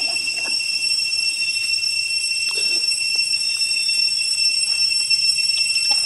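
A steady, high-pitched drone of cicadas, unbroken throughout, with a few faint brief rustles beneath it.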